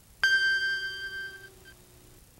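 A single chime or bell tone struck about a quarter second in, ringing and fading away over about a second and a half, as the closing note of the opening music sting.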